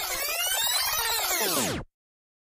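Electronic music or synthesizer sound effect of many tones sliding up and then down together, in two waves about a second long, that cuts off suddenly near the end.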